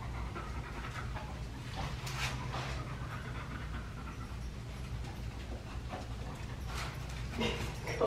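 A pet dog panting close by, over a low steady hum.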